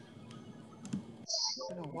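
Computer keyboard typing: a few scattered key clicks as a word is typed, with a short hiss about one and a half seconds in.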